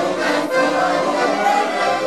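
Two accordions playing a Hungarian folk-song (nóta) tune together, a steady run of sustained chords and melody.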